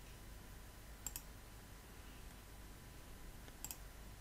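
Two computer mouse clicks, each a quick double tick of press and release: one about a second in, the second near the end, choosing an address suggestion and then pressing a button.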